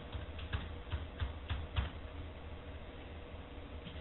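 Computer keyboard typing: about eight irregular clicks over the first two seconds, over a steady low electrical hum.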